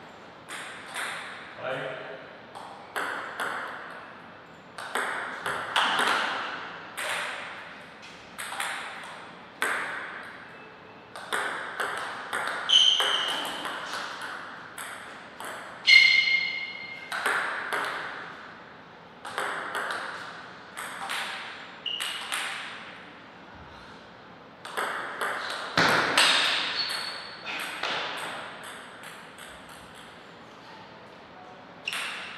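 Table tennis rallies: the ball clicking off the paddles and the table at about one hit a second, with short pauses between points. Each hit is followed by a brief echo.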